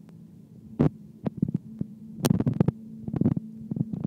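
A steady low hum with a run of close, sharp knocks and clicks over it, singly and then in quick clusters, typical of a camera being handled as the recording is stopped.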